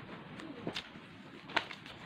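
Faint handling noise: a few soft clicks and rustles as the phone is moved over the paper.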